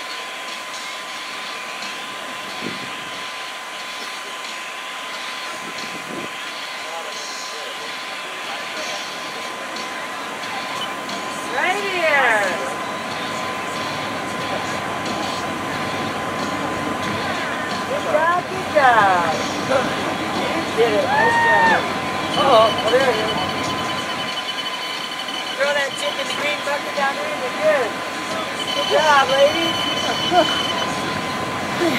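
Outdoor crowd sound at a race finish: scattered voices calling out now and then over steady background noise. A thin, steady high-pitched tone runs throughout.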